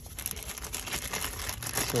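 Clear plastic bag crinkling as the new DEF filter is handled in its wrapping, a dense run of fine crackles.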